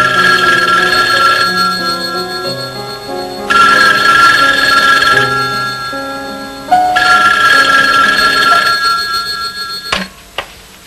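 Rotary-dial desk telephone bell ringing three times, about three seconds apart, each ring fading before the next, over soft background music.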